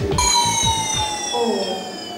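A bright, bell-like ringing sound effect of many high tones together, starting suddenly and gliding slowly downward as it fades over about two seconds.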